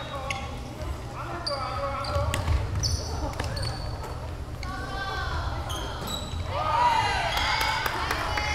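Sounds of a basketball game on a hardwood gym floor: the ball bouncing, short sneaker squeaks, and women players calling out, louder near the end.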